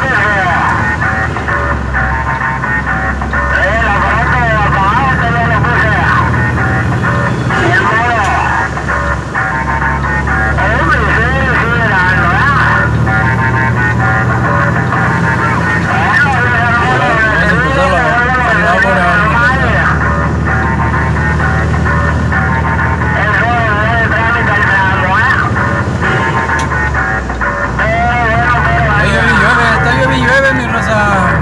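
A song with a singing voice playing from a car radio, heard inside the moving vehicle over the steady low drone of its engine and road noise.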